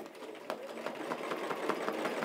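Home sewing machine free-motion stitching through a quilt, starting up and getting louder over the first second, then running steadily.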